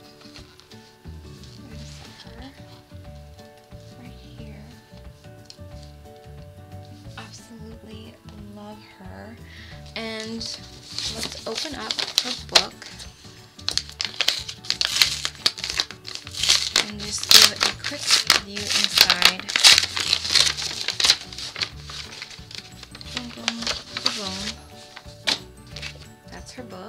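Packaging crinkling and rustling as it is unwrapped by hand, loud and crackly from about ten seconds in until near the end, over faint background music.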